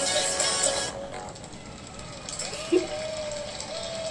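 Music from an animated beatbox battle cuts out about a second in, followed by a long, held, wavering voice-like tone.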